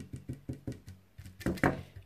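A paintbrush being jabbed repeatedly against a metal number plate to stipple on glue and rust powder: a run of light, irregular taps, with two louder ones about a second and a half in.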